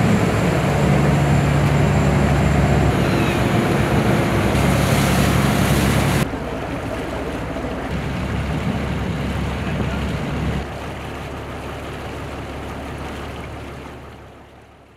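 Fishing boat's engine running with a steady low hum amid wind and water noise. About six seconds in it cuts abruptly to quieter sea and wind noise, which steps down again after about ten seconds and begins to fade near the end.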